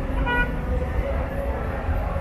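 A single short car horn toot, about a quarter second long, shortly after the start, over a steady low rumble of crowd and traffic noise.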